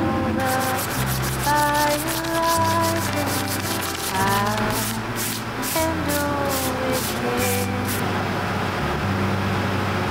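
Ballpoint pen scratching across notebook paper in quick repeated strokes, stopping about eight seconds in, over a background song with a sung melody.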